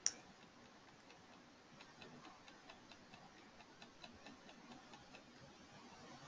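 Near-silent room tone broken by one sharp click at the very start, then a run of faint, even ticks about five a second from about two seconds in until about five seconds in.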